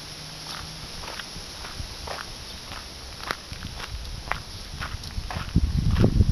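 Footsteps of a person walking on a dirt path, about two steps a second. A louder low rumble comes in near the end.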